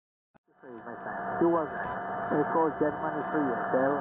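Shortwave receiver audio from an SDRplay receiver on a Mini Whip active antenna, starting about half a second in: a distant ham operator's single-sideband voice on the 20-metre amateur band, coming through steady hiss and static. The sound is thin and narrow, cut off above the voice band, and it is a bit noisy.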